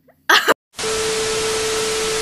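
TV static sound effect: a loud hiss with a steady beep tone over it, cutting in sharply under a second in.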